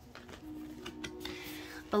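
Quiet background music holding soft low notes, with a few light clicks and a brief rustle in the second half from oracle cards being handled.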